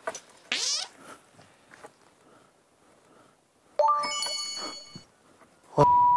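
Added editing sound effects. A short rising chirp comes about half a second in, a bell-like chime with shimmering high tones rings for about a second near the four-second mark, and a brief steady beep sounds near the end.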